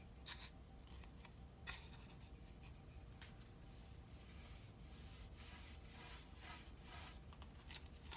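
Faint, scratchy swishing of a chip brush stroking clear oil wax onto a chipped milk-paint finish on a wooden tabletop. There are a couple of light taps in the first two seconds as the brush is loaded from a plastic cup.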